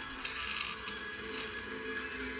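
Music played faintly through a Shokz OpenRun Pro bone-conduction headphone pressed against a water bottle. The transducer's vibration makes the bottle itself sound the music.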